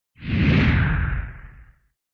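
A whoosh sound effect with a low rumble beneath it. It swells up just after the start and fades out over about a second and a half.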